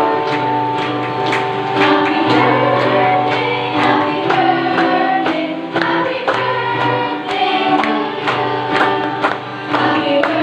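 A choir and congregation singing a hymn over instrumental backing with a steady bass note. Hands clap on the beat about twice a second.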